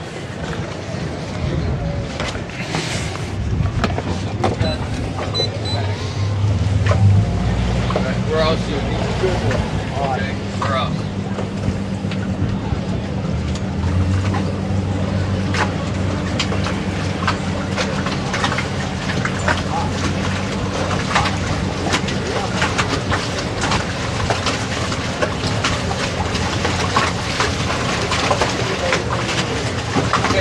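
Towboat engine running under way while towing a boat lashed alongside, a steady low hum that grows louder about seven seconds in and again around fourteen seconds, with many short clicks throughout.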